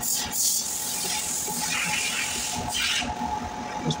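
Hands rubbing and brushing over the metal end shield of a three-phase induction motor: a short scratchy rub right at the start, then a longer one from about one and a half to three seconds in, over a faint steady hum.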